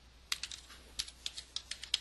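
Computer keyboard being typed: about ten quick, irregular key clicks starting a moment in and coming faster toward the end.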